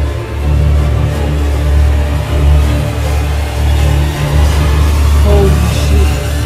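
Dark, ominous horror-film score built on a loud, sustained low bass drone with held tones above it.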